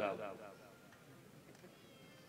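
A man's voice through a microphone, trailing off at the end of a drawn-out word within the first half-second, then a pause near silence.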